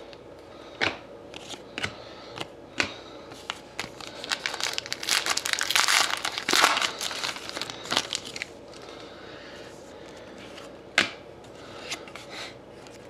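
Foil trading-card pack wrapper being torn open and crumpled by hand: a dense stretch of crinkling and tearing in the middle, with a few sharp clicks of cards being handled before it and one near the end.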